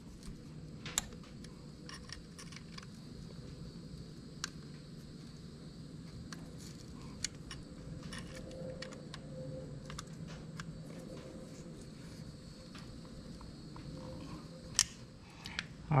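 Allen key turning and tightening a bolt on a motorcycle engine, with scattered light metallic clicks of the tool against the bolt, over a faint steady hum.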